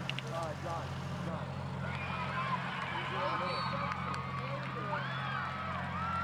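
Several distant voices calling and shouting over one another, growing busier about two seconds in, over a steady low hum.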